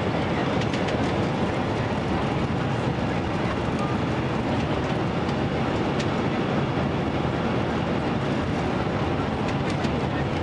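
Steady cabin noise inside an airliner on final approach: the constant rush of the jet engines and airflow past the fuselage, with a few faint clicks.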